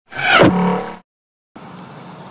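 A short intro sound effect, about a second long, with a falling sweep and a held low tone, cutting off abruptly. About half a second later a faint steady outdoor background noise sets in.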